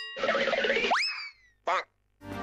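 Cartoon sound effects: a voice saying "oh no", then about a second in a quick upward-sliding boing that trails off in falling tones, and a brief sound near the end.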